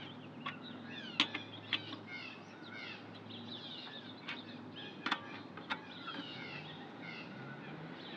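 Lug wrench and lug nuts on a car's spare wheel being snugged down: a handful of sharp metallic clicks at uneven intervals. Small birds chirp in the background.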